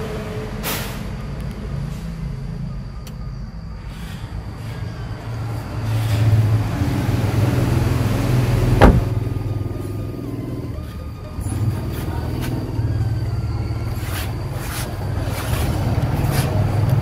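Low, uneven vehicle rumble throughout, with a single sharp thud about nine seconds in as the truck's cab door is shut.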